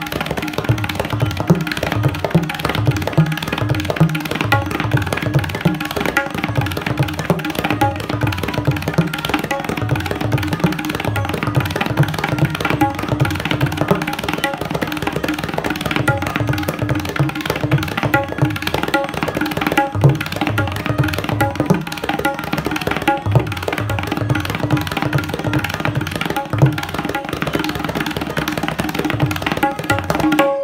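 Tabla pair played in fast, continuous strokes, practising 'dheer dheer' (dhir dhir) phrases. The dayan's steady ringing pitch sounds over repeated deep bass strokes from the bayan.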